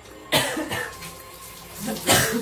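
A person coughing: one sharp cough about a third of a second in that trails off, and another starting right at the end.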